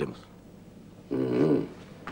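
A man's brief wordless vocal sound, about half a second long, starting about a second in, between stretches of low room tone.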